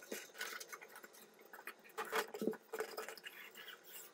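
Faint rustling and light scratching as hands pull polyester screen mesh outward over a wooden frame and lay the stretch cord along its groove, with a few slightly louder brushes a little after halfway.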